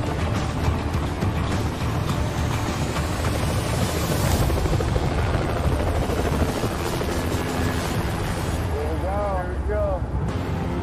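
A Bell 206L LongRanger-type turbine helicopter running close by, its two-bladed rotor beating steadily as it lifts off, with a rising whine about four seconds in.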